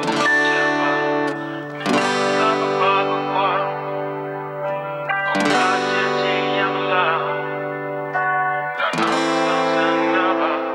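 Acoustic steel-string guitar fingerpicked through a chord progression: four chords struck in turn, near the start, about two seconds in, then about every three and a half seconds, each ringing on while single notes are picked over it.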